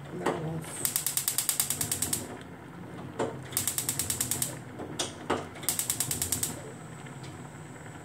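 Gas hob's spark igniter clicking rapidly, about ten clicks a second, in three bursts as the burner knob is held in, with a few single knocks between the bursts.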